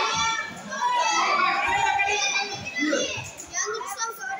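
Children's voices shouting and calling out over one another, high-pitched and continuous.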